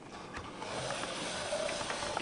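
A steady hiss that sets in about half a second in, with a few faint clicks.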